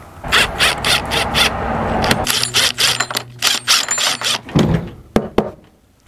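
Cordless drill driving screws into a fridge lid to fit latches. The motor runs in short spells over a quick series of clicks, and a few separate clicks follow near the end.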